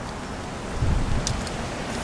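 Wind rumbling on the microphone, with a stronger low gust about a second in and a few faint clicks.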